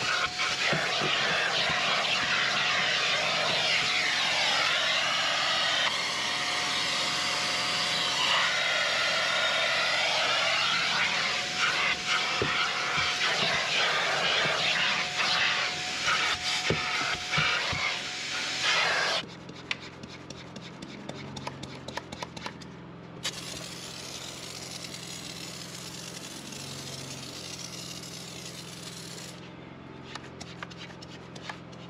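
Vacuum cleaner sucking at car floor carpet through a ribbed hose: a steady rushing noise with a thin whistle that comes and goes as the nozzle moves. It cuts off suddenly about two-thirds of the way through, leaving a quieter low hum with a few small clicks.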